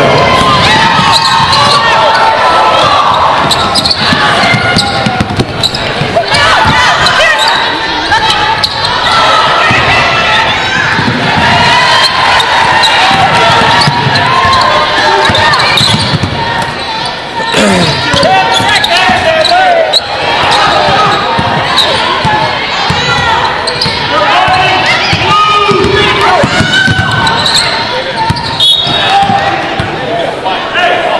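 Live basketball play on a hardwood court: the ball bouncing, short high squeaks from sneakers, and players and spectators calling out, all echoing in a large gym.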